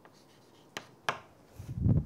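Chalk writing on a chalkboard, with two sharp taps about a second in, then a low rumble near the end.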